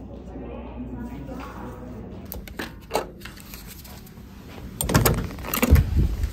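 Low murmur of voices in a lobby, then a few sharp clicks and two loud knocks near the end as a hotel room door is unlocked and opened.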